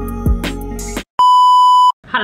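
Intro music with deep bass and a kick drum, cutting off about halfway through; after a short gap, one loud, steady electronic beep of a single high pitch, like a censor bleep, lasting under a second.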